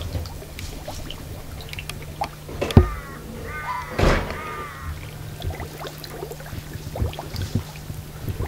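Water welling up from a leaking underground pipe and running over the ground, with two sharp thuds about three and four seconds in.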